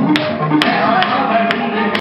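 Upbeat dance music playing, with sharp taps landing on the beat about twice a second.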